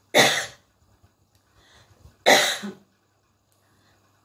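A woman coughing twice, two short bursts about two seconds apart.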